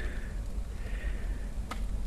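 A television set on fire, burning with a steady noisy hiss over a low rumble and one sharp pop near the end.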